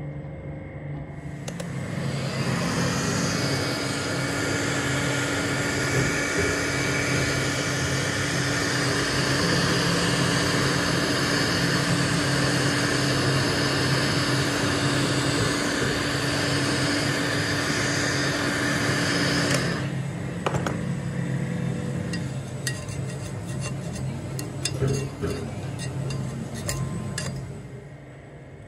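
Heat gun running steadily, its fan motor humming, then switching off suddenly after about eighteen seconds. Scattered light clicks and taps of metal follow.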